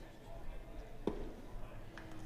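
A single sharp pop about a second in, a pitched baseball smacking into the catcher's mitt, over faint ballpark crowd noise.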